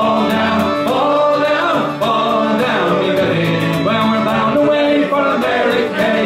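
Fiddle and acoustic guitar playing an Irish folk tune together, the fiddle carrying the melody over rhythmic guitar strumming.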